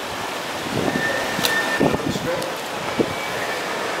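Steady outdoor ambient noise with faint, indistinct voices in the first half and a single sharp click about one and a half seconds in.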